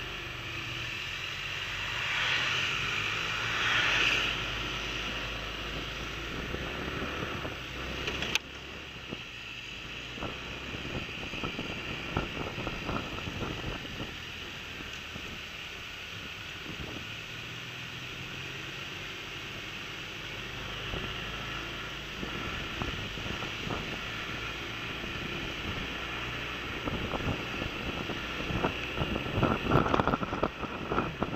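Wind rushing over the microphone together with the running engine and tyre noise of a large touring scooter under way. A louder stretch comes a few seconds in, and wind buffets the microphone in gusts near the end.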